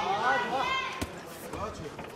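A man's voice talking, with a single sharp thud about a second in from the boxers exchanging at close range in the ring.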